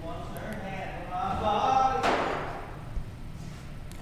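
A man singing faintly at a distance in held notes. About halfway through comes a short rushing noise, and a light thump about a second later.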